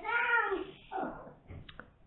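A high-pitched, drawn-out vocal call that rises and falls over about half a second, followed by a fainter, shorter call about a second in.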